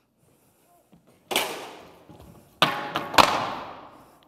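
Wooden planks, a two-by-four and a larger board, falling and clattering onto the wooden stage floor: three loud crashes, the first about a second in and two more close together near the end, each trailing off in a long ringing decay.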